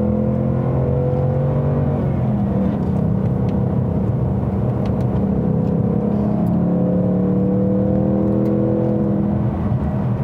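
The 2019 Ford Mustang Bullitt's naturally aspirated 5.0-litre V8 running under throttle, heard from inside the cabin. It holds a steady note with a brief break about two seconds in, then climbs slowly in pitch.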